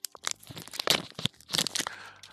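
Foil Pokémon booster pack wrapper crinkling and tearing by hand in a run of irregular, sharp crackles.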